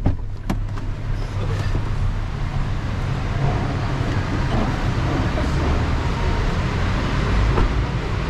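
Steady low rumble of idling cars and traffic in a covered, concrete-roofed driveway, with two sharp clicks about half a second apart at the start.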